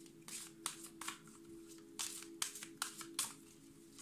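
A deck of oracle cards being shuffled by hand: a string of short, uneven papery flicks, about two a second.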